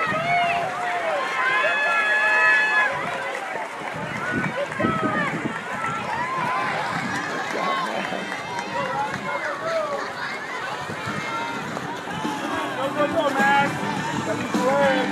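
Many overlapping voices shouting and cheering, some high-pitched like children's, with a few held calls, over the splashing of swimmers racing backstroke.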